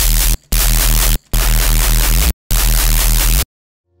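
Heavy, distorted neuro reese bass from a Serum patch: detuned sine waves layered with noise, run through tube distortion and multiband compression. It plays as four loud sustained notes with short gaps and stops about half a second before the end, while its mids are being turned down in the multiband compressor.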